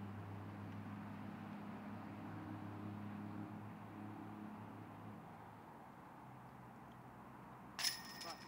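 A low steady hum throughout, then near the end a sharp metallic clash with a brief jingling ring: a disc golf putt hitting the chains of the basket.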